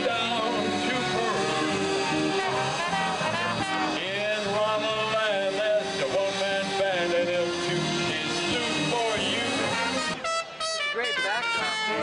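Big band swing music with brass, playing steadily, with a brief drop in level about ten seconds in before the full band comes back.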